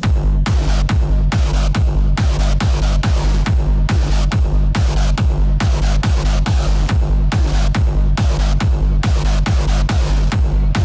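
Techno track mixed live at about two kick-drum beats a second, with a heavy sustained bassline; the full beat comes in right at the start after a quieter passage.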